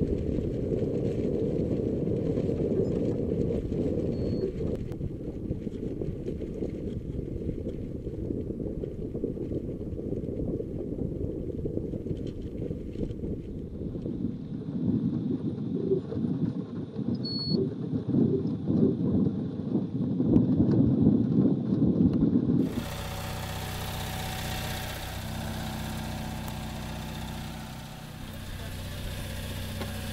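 Wind buffeting the microphone of a camera riding on an ascending high-altitude balloon payload: a muffled, low rumble that grows louder and gustier in the middle. About three quarters of the way through it cuts suddenly to a quieter, steady hum and hiss.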